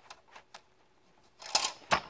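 Plastic Connect 4 disc being fed into the grid: a few light clicks, then sharper plastic knocks and clatter about a second and a half in and again just before the end.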